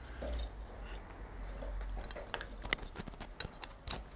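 Light, irregular clicks of thin wooden pieces threaded on a wire knocking against each other as the stack is worked loose from a vise. The clicks come mostly in the second half, over a low steady hum.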